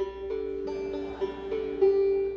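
A stringed instrument playing a short run of held notes, the pitch stepping every few tenths of a second, in bluegrass style.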